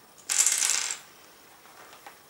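A handful of dry conchigliette (small shell pasta) dropped onto a cardboard cut-out on a table, clattering briefly about a quarter second in.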